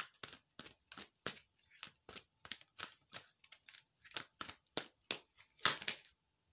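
Oracle card deck being shuffled by hand: a quiet run of sharp, irregular card clicks and slaps, several a second.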